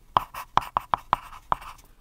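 Pen-writing sound effect: a quick run of about seven short, scratchy pen strokes in under two seconds.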